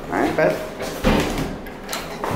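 A louvered door clunking open about a second in, pushed by a small child, with a brief voice just before.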